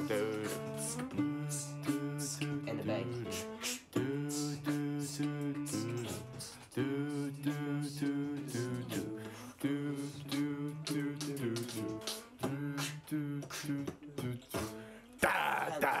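Guitar strumming chords in a song, with a short sung 'do do' at the start. The music turns louder and fuller near the end.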